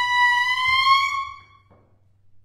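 A clarinet holding a single high, straight note that swells and bends slightly sharp about half a second in, then dies away about a second and a half in. A faint low hum lies underneath.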